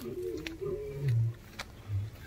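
Male lion giving short low grunts, one about a second in and another near the end.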